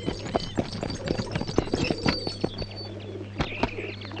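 Outdoor film ambience: birds chirping and a dove cooing, over scattered clicks and clops from the carriage horse's hooves and a steady low hum.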